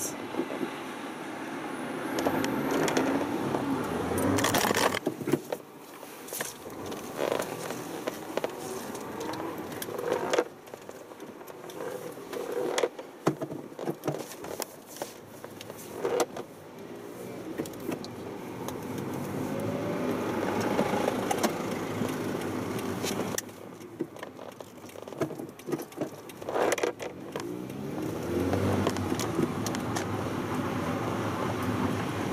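Inside the cabin of a 2000 Toyota Yaris with a 1.3-litre VVT-i four-cylinder engine and sports exhaust, driving through town: the engine note rises and falls several times as the car accelerates and eases off. Several sharp knocks and rattles from the car's interior and the road come through over it.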